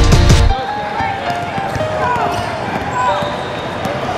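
A music track cuts off about half a second in, leaving the live sound of a youth basketball game in a large hall: a basketball bouncing on the hardwood court amid players' and spectators' voices.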